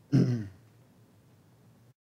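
A man clearing his throat once, a short burst just after the start, followed by faint room hum.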